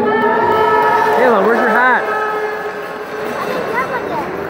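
Children's voices yelling and cheering in long held shouts that waver in pitch, dropping off after about two seconds, followed by scattered shorter yells.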